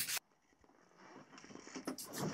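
Near silence between lines of voice-over narration: the voice cuts off just after the start, then faint noise creeps in during the second half, with a soft click or two near the end.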